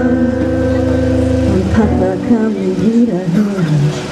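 A woman singing live with acoustic guitar: a held chord and sung note, then about halfway through the guitar drops out and the voice wavers and slides downward.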